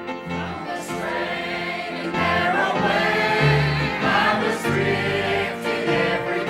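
Church choir singing a hymn with piano and bass guitar accompaniment. The voices grow fuller and louder about two seconds in.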